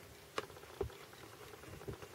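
A few faint, short clicks and taps, about four in two seconds, from handling around a plastic tub and feeding tongs.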